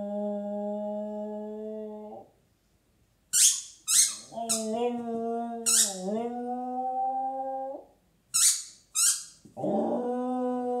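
A dog howling in long, steady held notes, three times, the second dipping briefly in pitch partway through. Between the howls come several short, sharp breathy sounds.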